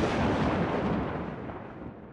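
The rumbling tail of a loud boom, an explosion-like sound effect, fading steadily.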